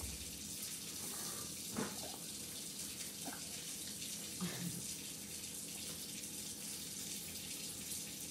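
Steady hiss with a few soft, short sounds about two, three and four and a half seconds in, as a baby sips water from a small drinking glass.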